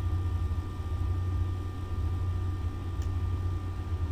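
Steady low background hum with faint hiss, and a single faint click about three seconds in.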